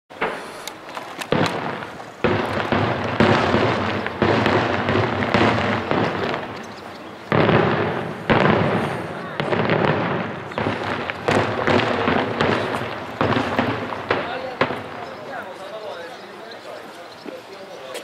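Daytime fireworks display: rapid bangs and dense crackling from aerial shells bursting in coloured smoke, coming in several loud surges in the first half and thinning out over the last few seconds.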